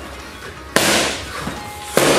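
Boxing gloves landing on leather punch mitts twice, about a second apart. The first is a sharp smack with a hissing tail that fades over about a second; the second is a short crack near the end.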